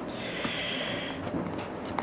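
Stiff cardboard packaging being handled: a short scraping rustle as a flap of the box's inner tray is lifted and slid, with a few faint taps.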